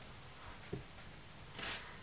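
A quiet pause: faint room tone, with a small click a little before halfway and a brief soft hiss near the end.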